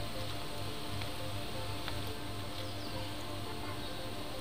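Background music with a steady low beat and held tones.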